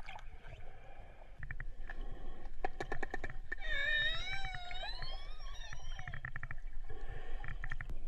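Underwater killer whale sounds: trains of rapid echolocation clicks, then a long call that glides up and down in pitch with several overtones, then more click trains, over a low underwater rumble.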